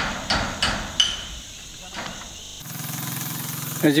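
Hammer blows at a building site, about five sharp strikes in the first two seconds, with a ringing metallic edge. Near the end the hammering gives way abruptly to a steady engine hum.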